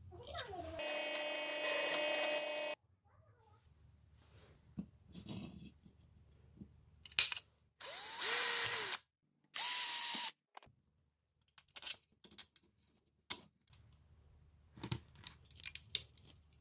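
A bench drill press runs steadily for the first few seconds and stops abruptly. Then a cordless drill runs in two short bursts, about a second each, drilling through square aluminium tube. Small sharp metal clicks follow as the aluminium pieces are handled.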